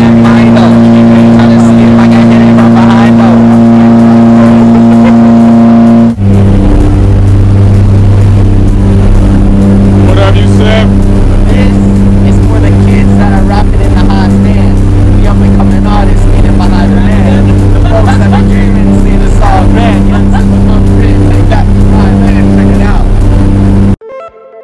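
Loud electronic background music: a sustained synth chord, then at about six seconds an abrupt switch to a beat with a deep bass line and evenly pulsing notes.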